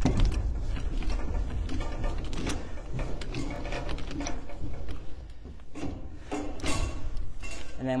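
Metal clicks, clanks and rattles from the hand crank and roller of a trailer's roll tarp being cranked closed, over a low rumble.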